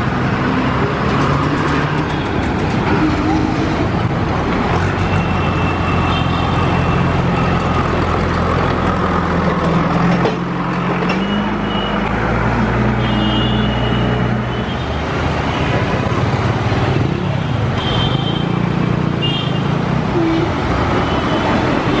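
Busy city road traffic, with the low, steady hum of a heavy vehicle's engine running close by; the engine note steps up in pitch about halfway through.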